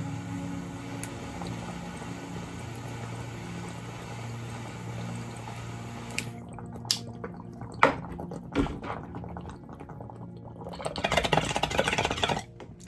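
Water bubbling in a glass bong as vapour is drawn through it from a torch-heated Lotus vaporizer, steady for about six seconds. Then a few light clicks, and a louder rush of noise near the end.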